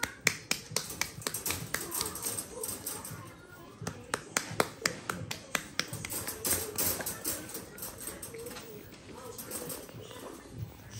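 A run of sharp, irregular clicks and taps, several a second, thinning out after about seven seconds.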